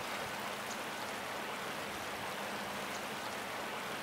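Steady rush of a shallow river flowing over stones.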